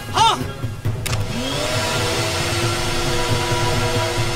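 A man's short shout, then about a second in a vacuum cleaner is switched on. Its motor winds up in a rising whine and settles into steady running with a rushing hiss. It is powering an improvised suction cup for a vacuum delivery.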